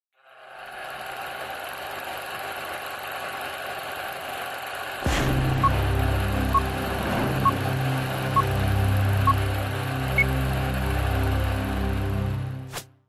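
Film-leader countdown sound effect over a running film projector. A steady hiss builds up, then a click about five seconds in brings in a low droning hum. Short high beeps come about once a second, five of them, followed by a final beep at a higher pitch.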